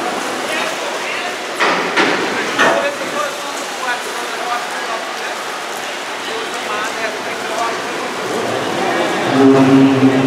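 Indistinct voices over a steady, hiss-like open-air background. Near the end a steady low tone with overtones comes in.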